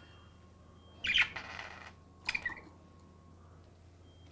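Caged pet budgerigar chirping twice: one call about a second in with a short trailing chatter, and another a second later.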